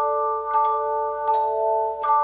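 Handbell choir ringing chords. Three chords are struck, right at the start, about half a second in and a little past a second, and each rings on until the next.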